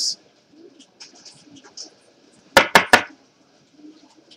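Trading cards and hard plastic being handled on a table: faint rustles and light ticks, then three sharp clicks in quick succession, about a fifth of a second apart, about two and a half seconds in.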